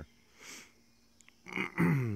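A man's short sniff, then him clearing his throat near the end.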